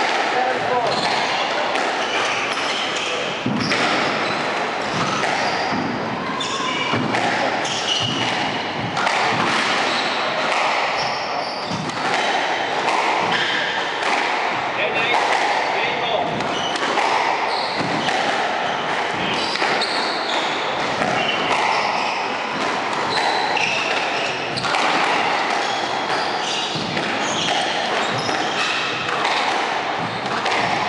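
Squash rally: the ball repeatedly struck by rackets and smacking off the court walls, with court shoes squeaking on the wooden floor, over a steady murmur of voices in the hall.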